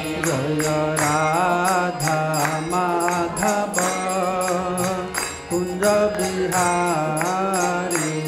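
Devotional kirtan chanting: one man's voice sings a mantra line alone in a wavering melody, over a steady quick percussion beat.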